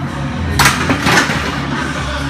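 A heavily loaded barbell set back into the bench-press uprights, with two short metallic clanks of bar and plates about half a second apart. Background music continues underneath.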